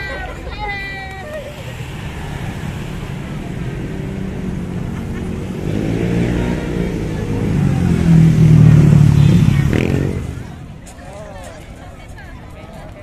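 A motor vehicle engine passing close by: a low hum that builds over several seconds, is loudest about eight to ten seconds in, then drops away quickly. Voices come before it and crowd chatter after.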